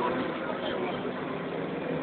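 Iveco Eurorider city bus's diesel engine and Voith automatic gearbox running with a steady hum as the bus drives, heard from inside the passenger cabin.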